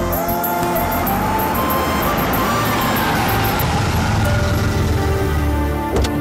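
A car driving up, its noise swelling through the middle, over background music, with a short sharp click at the very end.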